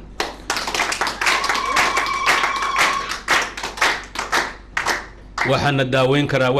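An audience clapping for about five seconds. A steady high tone is held for about two seconds in the middle. A man's amplified speech resumes near the end.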